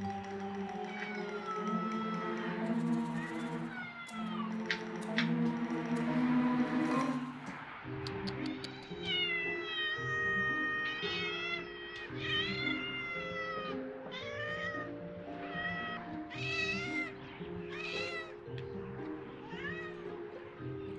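Cats meowing again and again, a long series of short arching meows that come about once a second in the second half, with one longer drawn-out meow about ten seconds in. Background music plays underneath.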